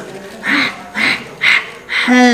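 A man's voice making four short, breathy vocal sounds, about two a second, like rhythmic grunts or panting.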